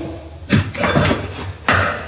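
Knocks and clatter of hard objects being handled on a table, with a sharper knock near the end.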